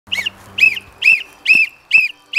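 A series of short, high chirps, evenly spaced at about two a second, each a quick rise-and-fall in pitch.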